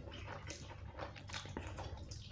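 Mouth sounds of a man slurping a forkful of instant noodles and chewing, a run of short wet sucking bursts with a few light clicks.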